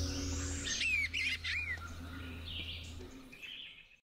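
Recorded birdsong: a few quick, swooping whistled calls about a second in, then fainter calls as it fades out near the end.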